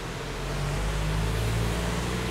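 Traffic on a wet road: a steady hiss of tyres with a low engine hum underneath, growing a little louder about half a second in.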